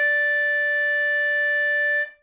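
A single held note at one steady pitch with a buzzy, reedy edge, starting abruptly and cutting off after about two seconds.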